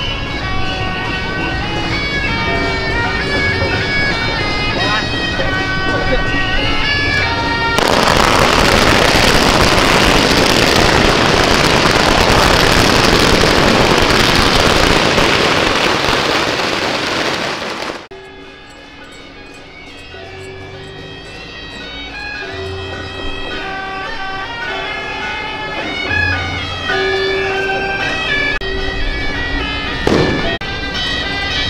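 Festival music led by a wind instrument plays, then about eight seconds in a long string of firecrackers goes off, crackling loudly for about ten seconds and drowning out everything else. The firecrackers stop suddenly and the music carries on, quieter.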